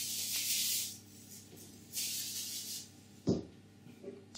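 Cling film crinkling as it is peeled off a ball of chilled dough, in two bursts near the start and about two seconds in, then a single thump on a wooden table.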